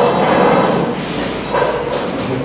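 Chairs scraping and knocks on the table as two people get up from a press-conference table. It starts suddenly and loudly, with another scrape about one and a half seconds in.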